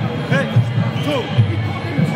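A steady thumping drum beat, about two to three beats a second, with voices calling over it.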